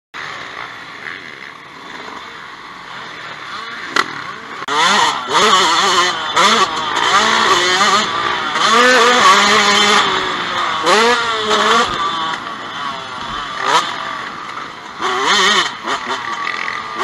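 Motocross dirt bike engine heard from on board, revving up and falling back again and again as the rider accelerates and shifts, with bursts of rushing noise. A sharp knock comes about four seconds in, and the sound grows louder about a second later.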